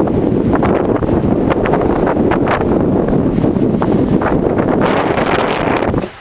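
Wind buffeting the camera microphone outdoors: a loud, steady rumble with crackles, which cuts off suddenly at the end.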